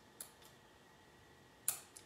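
Quiet room tone broken by two short clicks, a faint one just after the start and a sharper one near the end, from metal tweezers working a die-cut paper piece inside a small paper box.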